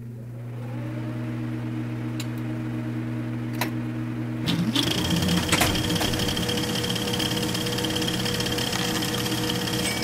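A steady low electric hum that changes about four and a half seconds in to a busier rumble, with a high steady whine held above it.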